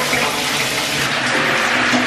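A shower running: a steady, even spray of water falling onto a person and the tiled stall.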